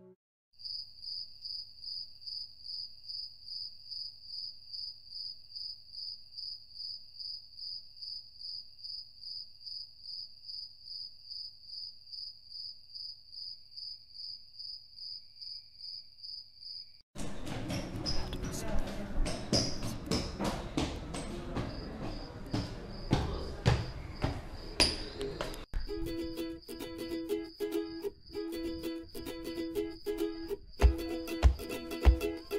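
A steady insect trill of high chirps, about three a second, over a faint low hum. A little past halfway it gives way to a louder stretch of noise with scattered clicks and knocks. Near the end, plucked-string music with a steady rhythm begins.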